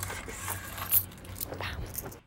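Loose coins jingling and clinking as they are handled, with a sharp clink about a second in.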